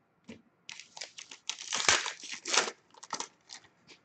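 A trading card pack wrapper being torn open and crinkled: a run of short rips and rustles, loudest in the middle.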